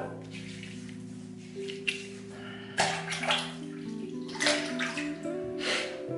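Water splashing as wet hands are brought to the face to re-wet it before shaving: three short splashes in the second half.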